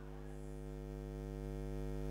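Steady electrical mains hum, a low buzz with many evenly spaced overtones, growing slightly louder.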